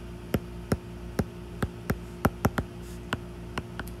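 Stylus tip tapping and clicking on a tablet's glass screen while handwriting, about a dozen sharp, irregularly spaced ticks. A faint steady electrical hum lies underneath.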